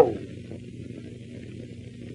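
Steady low hum and hiss of an old film soundtrack, with the end of a man's spoken word in the first moment.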